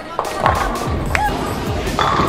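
Bowling ball rolling down a lane with a low rumble and a few knocks.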